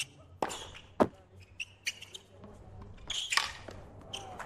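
Tennis ball struck by rackets during a rally: several sharp hits, the loudest about a second in, then a short noisy burst near the end.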